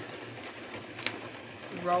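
Paper being fed into a Xyron Creatopia adhesive applicator and rolled through its rollers: a steady noise with a single sharp click about halfway through.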